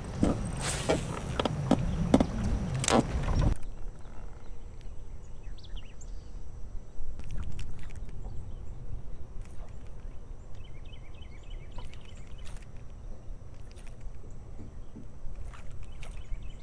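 A cast from a boat with wind buffeting the microphone for the first few seconds, cutting off suddenly. Then a quieter stretch of water lapping against the boat with scattered faint ticks and clicks.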